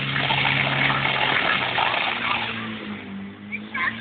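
Water rushing from two fire hose jets over a steady engine hum, which shifts in pitch about a second and a half in. The rush dies away about three seconds in as the jets are shut off.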